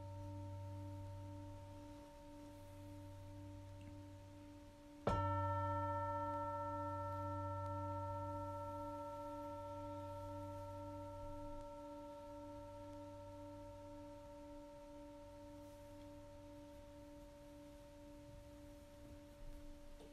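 A meditation bell struck once about five seconds in, over the fading ring of an earlier strike. Its deep, slowly wobbling ring with several higher overtones dies away gradually over the following fifteen seconds, marking the close of the meditation session.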